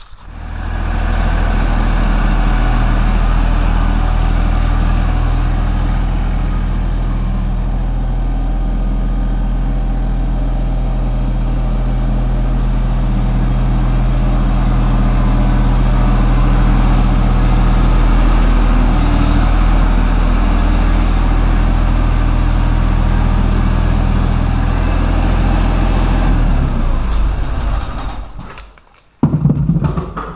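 Tractor engine running steadily with a low hum, dying away a few seconds before the end, followed by a few sharp knocks.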